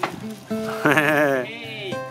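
A single quavering vocal call lasting about a second, its pitch wobbling fast and sliding down at the end, over steady background music.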